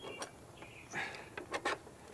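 Faint handling clicks and rubbing as a Watts AquaLock push-to-connect fitting is slid by hand onto a brass outlet of a shower valve, with a few short ticks spread through the moment.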